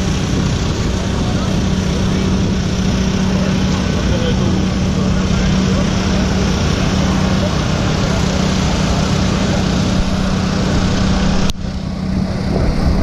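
An engine running steadily at a constant pitch, with voices in the background; the sound drops off suddenly near the end.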